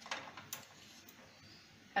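A few light clicks of metal spoons knocking together as a lump of homemade mawa is scraped off into the pan, one sharper click about half a second in, over the faint steady simmer of the milk-and-sugar syrup.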